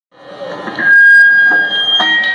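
Between songs at a rock show, a loud high steady tone rings for about a second, then steps up in pitch, over crowd and stage noise.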